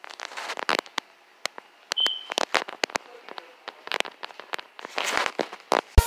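Irregular clicks, knocks and crackles, with a short high beep about two seconds in.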